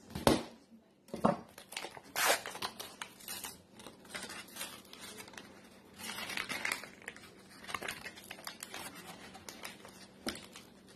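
Refrigerated biscuit dough can being opened by hand: the paper wrapper torn and peeled off the spiral-wound cardboard tube and the tube twisted and split open. A run of sharp snaps and crinkly tearing, the loudest snap just after the start.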